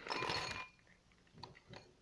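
Takis rolled tortilla chips tipped out of their bag into a dish, a dense rattling and crinkling for about half a second, followed by a few light clicks as the last pieces settle.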